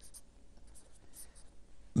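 Felt-tip marker drawn across a white writing board, a few faint short strokes as a line and an arrow are drawn.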